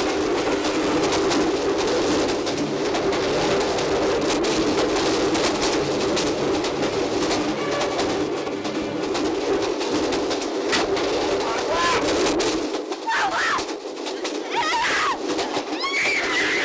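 Film sound of a train carriage crashing: a continuous heavy rumble and clatter with people shouting and screaming. About thirteen seconds in the rumble drops away, leaving rising and falling cries and wails.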